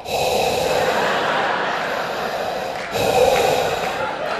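A man doing a Darth Vader breathing impression into a close microphone: two long, heavy breaths, the second starting about three seconds in.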